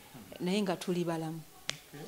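A woman speaking into a handheld microphone for about a second, followed near the end by a single sharp click.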